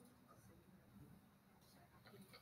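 Near silence: room tone with faint, indistinct voices in the background.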